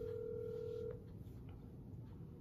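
Steady single-pitch telephone tone that cuts off about a second in, followed by quiet room tone with a couple of faint clicks.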